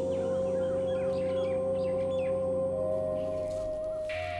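Soft background music, a loud sustained held note over lower held tones that steps up in pitch about three seconds in, with small birds chirping repeatedly over it until the chirps stop about three seconds in.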